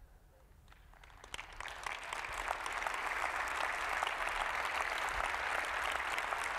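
Audience applauding: quiet at first, scattered claps begin about a second in and swell into steady, full applause by about two seconds.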